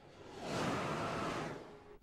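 Transrapid maglev train passing at speed on its elevated guideway: a rushing whoosh that swells about half a second in and fades away near the end.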